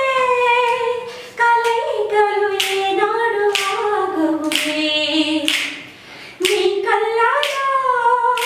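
A woman singing a song unaccompanied in a high voice, holding long notes in phrases with short breaks between them. Finger snaps keep the beat, about one a second.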